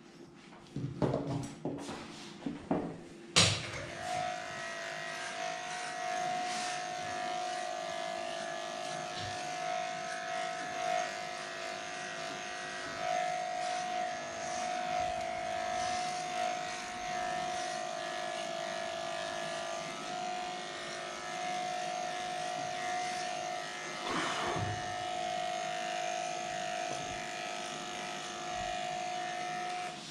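Cordless electric dog-grooming clipper switched on with a sharp click a few seconds in, then running with a steady, even whine as it shaves the dog's leg, stopping at the very end. A few light clicks and knocks from handling come before it starts.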